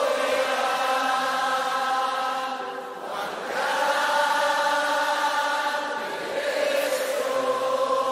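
Christian worship music: long held choir-like chords without clear words, moving to a new chord about three seconds in and again near the end.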